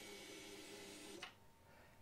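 Harley-Davidson touring motorcycle's electric fuel pump priming as the ignition is switched on: a faint steady hum that cuts off suddenly a little over a second in.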